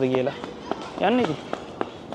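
Footsteps on paving, a few sharp scattered steps, while a voice trails off at the start and utters one short syllable about a second in.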